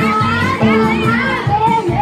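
Music playing under the voices and shouts of a crowd of children dancing.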